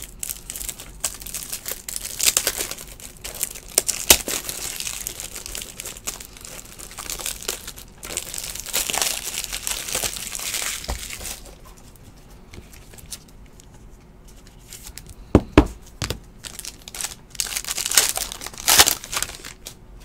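Clear plastic shrink-wrap on a pack of toploaders being torn open and crumpled by hand, crinkling off and on. There is a quieter spell past the middle and a few sharp taps, then more crinkling near the end.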